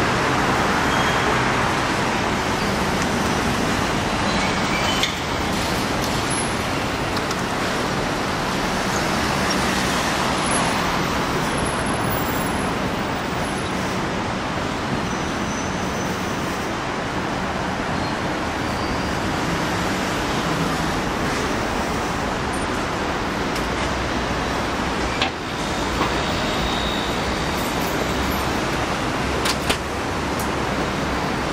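Steady city street traffic noise, with cars and a bus passing.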